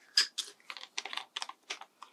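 A quick run of small, sharp clicks and scratches from hands working the black plastic screw cap off a bottle of masking fluid, with a paintbrush held in the same hands.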